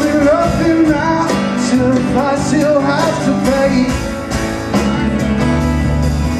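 Live band music: a man singing over an acoustic guitar and a drum kit with cymbals.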